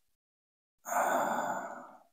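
A man sighs: one audible breath out, starting almost a second in and fading away over about a second.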